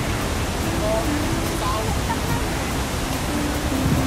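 Steady rush of a waterfall, an even roar of falling water that does not change.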